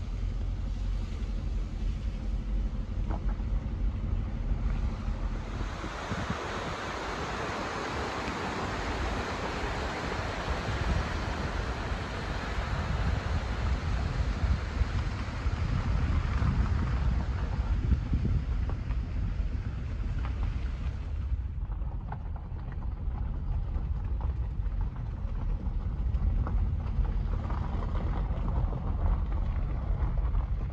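A vehicle driving along a forest road, heard from inside, with a steady deep rumble from the engine and tyres. A louder rushing hiss comes in about six seconds in and stops suddenly a little after twenty seconds.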